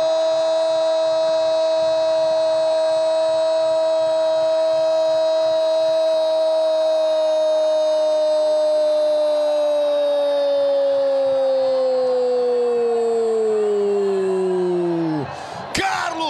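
Male football commentator's long drawn-out "Gol" shout: one loud note held steady for about ten seconds, its pitch then sagging slowly before it breaks off near the end, followed by a shorter falling cry.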